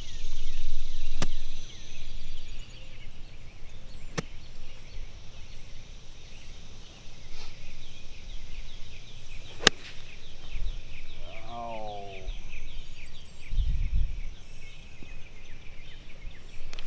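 Sand wedge striking a golf ball off the fairway turf: one sharp click nearly ten seconds in, after two fainter ticks. Birds chirp steadily throughout.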